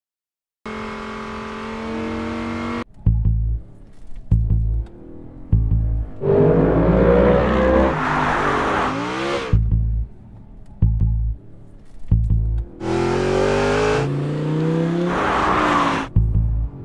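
A V10 sports car engine accelerating hard twice, its pitch climbing steeply each time, over a music track driven by heavy, slow bass-drum thumps. It opens with a steady pitched note held for about two seconds.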